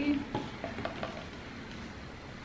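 Soft crackling rustle of dry sphagnum moss and potting mix as a potted pitcher plant is handled and set down in a plastic tub, with a few faint crackles in the first second.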